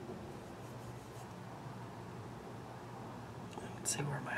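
Faint scratchy rubbing of a fingertip swiping powder eyeshadow onto skin to swatch it, over a low steady hum, with a sharper click near the end.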